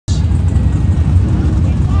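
OBS Chevrolet Silverado drag truck's engine idling at the starting line, a loud, steady low rumble.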